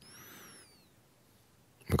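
A faint, short breath-like hiss in the first half-second, with a thin high whistle gliding down in pitch over it, then near silence before a man's voice resumes at the very end.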